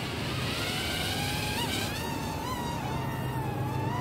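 Hubsan X4 H107D+ micro quadcopter's four small brushed motors and propellers spinning up into a high whine as it lifts off, the pitch rising through the first second or so and then wavering up and down as it hovers and moves.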